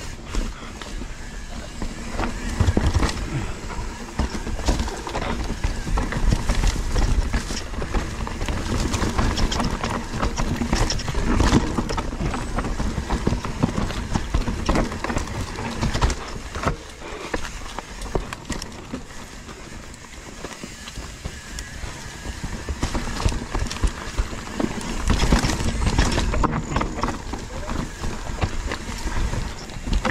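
Mountain bike ridden down rocky singletrack: tyres rolling and clattering over rock and roots, and the bike rattling, with a low rumble of wind on the handlebar-mounted microphone. The clatter is continuous and uneven, heavier for the first ten seconds or so and again near the end.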